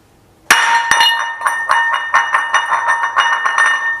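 Glass shattering: a sudden loud crash about half a second in, followed by a few seconds of tinkling and clinking shards over a steady ringing tone.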